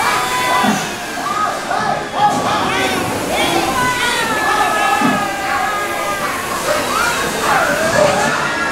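Dark-ride show soundtrack: excited cartoon-style voices and yelps mixed with music, full of short pitched sounds swooping up and down.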